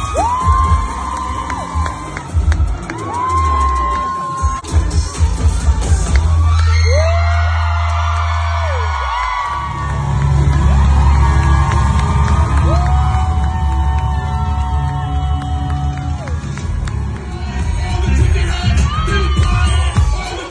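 Loud dance music with heavy bass at a live strip show, with the audience cheering and letting out several long, held whoops that swoop up and fall away.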